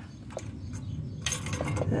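Steel socket on a long extension clinking and scraping against an exhaust flange bolt as it is worked up onto the bolt head. There are a couple of single clicks, then a quick cluster of clinks about a second and a quarter in.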